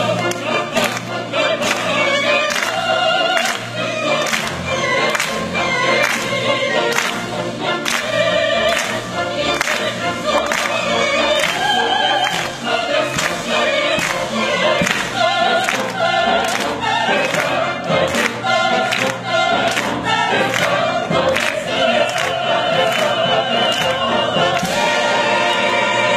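Operatic mixed chorus singing full-voiced with a symphony orchestra, over a steady pulse of sharp accented beats.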